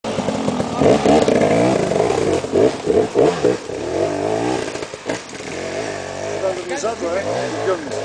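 Enduro dirt bike engine revving hard in quick rises and falls as it claws up a steep muddy climb, loudest in the first few seconds and then dropping away as it moves up the slope. Men's voices shout over it.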